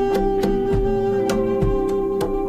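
A live band playing instrumental music: a saxophone holds one long note that changes near the end, over picked electric guitar notes and light percussion.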